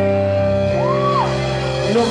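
Live rock band playing: electric guitars and bass sustain a ringing chord, and a single note bends up and falls back about halfway through.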